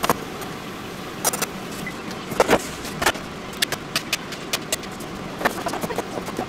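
A rectangular-bladed Japanese vegetable knife cutting carrot into sticks on a plastic cutting board: irregular sharp knocks as the blade meets the board, with a quicker run of cuts in the second half.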